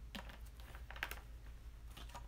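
Plastic drink bottle being handled and its cap screwed back on: faint clusters of small plastic clicks and crackles, the loudest about a second in.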